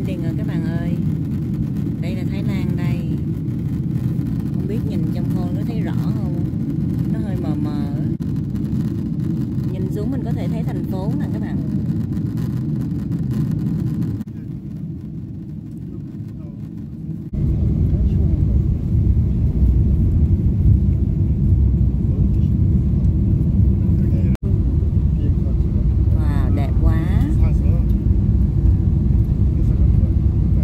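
Airliner cabin noise during descent: a steady low rumble of engines and airflow, with faint voices heard over it at times. The rumble drops abruptly about 14 seconds in and comes back louder about three seconds later.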